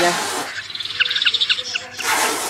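Recorded snipe lure call played through a bird-trapping amplifier and horn loudspeaker: a run of short, high chirps about four a second, after a brief rush of noise at the start. This is the looped two-part track, the flock snipe call paired with the fan-tailed snipe call.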